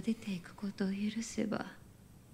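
A woman speaking softly, almost in a whisper, in Japanese: TV drama dialogue. The phrases die away near the end.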